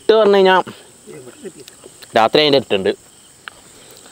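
Crickets chirping steadily in the background. A man's voice breaks in loudly twice, once at the start and again about two seconds in.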